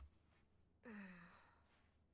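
Near silence, broken about a second in by one short, faint vocal sound with a falling pitch, like a sigh.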